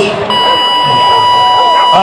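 Rodeo arena timing buzzer sounding one steady, buzzy electronic tone that starts a moment in and holds for under two seconds. It is the horn that marks the end of an eight-second bull ride.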